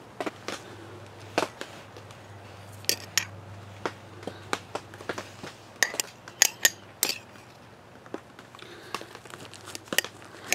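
Gloved hands handling morel spawn containers, with scattered crinkles and sharp clicks. The clicks come in a cluster between about six and seven seconds in.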